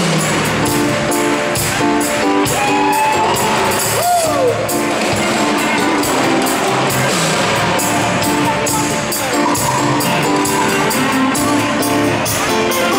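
Live pop band playing with drums, bass, keyboards and electric guitar, pulsing chords over a steady beat, with the bass line coming in right at the start. A single note slides downward about four seconds in.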